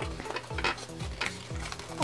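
Thin printed cardboard rustling and scraping under the hands as pieces are bent and slotted together, with a few light clicks and taps.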